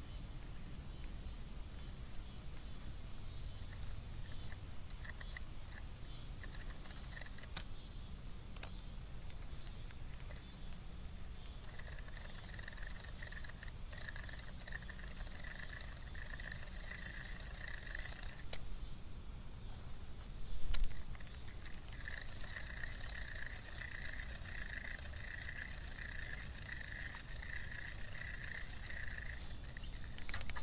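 Budget spinning reel being cranked in two stretches, giving a rhythmic clicking about twice a second like a roller coaster climbing its lift hill; the angler blames the cheap line rather than the reel itself. A short louder thump comes between the two stretches.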